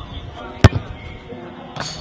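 A soccer ball kicked once on a corner-kick shot at goal: a single sharp thud a little over half a second in.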